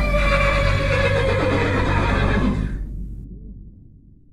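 Horse whinnying: one long neigh that falls slowly in pitch over a low rumble and fades out about three seconds in.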